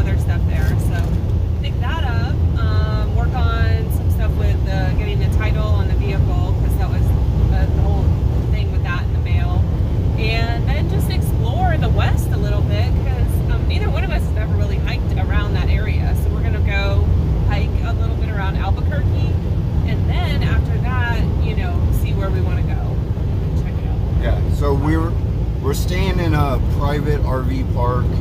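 Steady low drone of a motorhome's engine and tyres at highway speed, heard inside the cab, under conversation.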